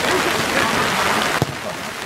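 Steady hiss of rain falling, with faint voices behind it and a single sharp knock about one and a half seconds in.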